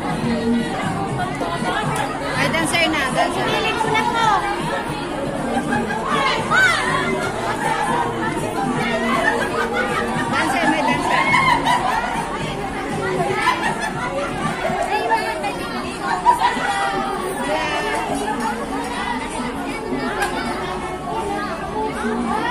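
Many women's voices chatting over one another in a large group, a steady babble of conversation.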